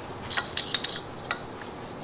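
A few light, sharp clicks from metal parts being handled: a quick cluster about half a second in and one more a little after a second, over quiet room tone.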